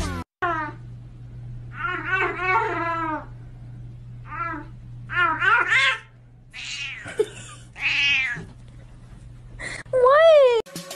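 A domestic cat meowing over and over: about half a dozen drawn-out meows that rise and fall in pitch, some coming in quick pairs, over a steady low hum.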